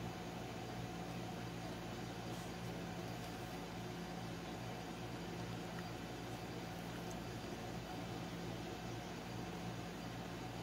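Steady low hum with a faint hiss, unchanging throughout: background room noise, with no distinct sound standing out.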